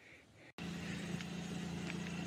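Near silence, then about half a second in a steady outdoor background noise with a low, even hum starts abruptly and runs on unchanged.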